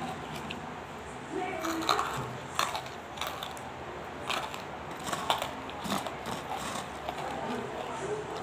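Hard banslochan (tabasheer) pieces crunching and clicking close to the microphone: a run of irregular sharp cracks starting about two seconds in.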